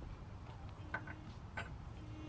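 A few light clicks with a faint ring, three close together about a second in and one more just after, over a steady low background rumble.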